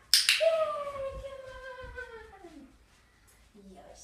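A dog gives a sharp yelp, then one long howling whine that falls in pitch over about two and a half seconds.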